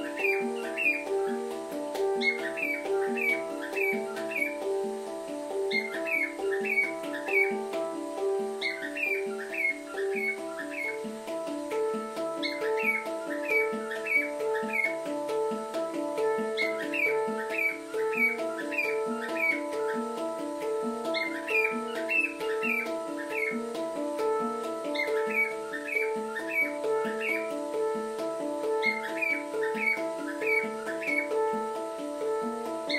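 Pantam (handpan) in a Kurd scale, played by hand in a steady, repeating pattern of ringing notes; the pattern moves up a step about eleven seconds in. Over it, short runs of high bird-like chirps come every couple of seconds.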